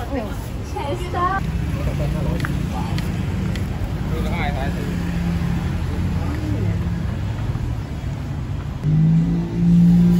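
City street traffic: a motor vehicle engine running nearby with a steady low hum, getting louder near the end. Scattered voices of passers-by sound over it.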